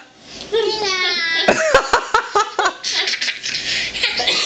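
A baby laughing: a high voiced laugh early on, then a quick run of short giggles, about five a second, turning breathier near the end.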